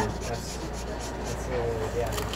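Steady low hum inside a commuter train car, with a black marker rubbing faintly on sketchbook paper.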